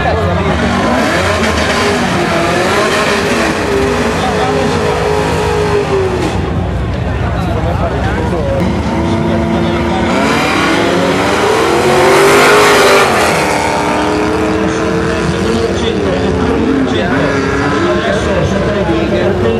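Two Chevrolet Corvette V8s revving at a drag-strip start line, then launching about twelve seconds in. The launch brings a loud surge of engine and tyre noise as the cars pull away down the strip.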